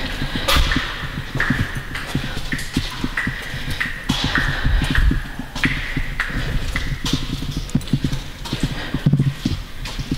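Footsteps on the concrete floor of a tunnel at a walking pace: a run of irregular thuds and scuffs that echo off the walls.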